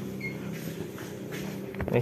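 Suzuki Satria FU 150's single-cylinder four-stroke engine idling steadily, with a few small clicks near the end.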